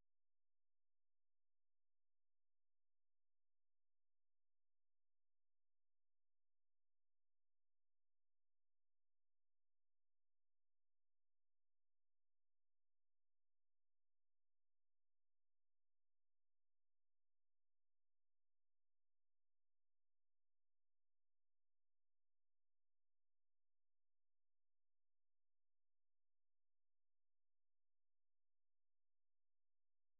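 Silence: the audio is muted during a commercial-break slate.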